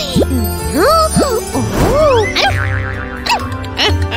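Light background music for a children's cartoon, with a run of playful sliding sound effects or vocal noises that sweep up and down in pitch several times.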